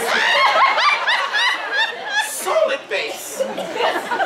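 Several people laughing, in short repeated bursts.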